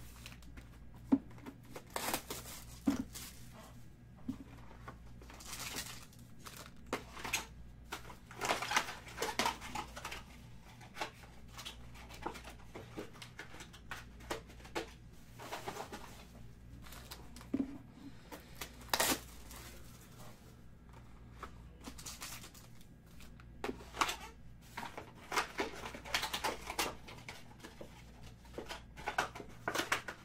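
Irregular crinkling of foil wrapping and rustling, tapping and sliding of cardboard card boxes as they are handled and opened, in scattered flurries with a few sharper clicks, over a faint steady hum.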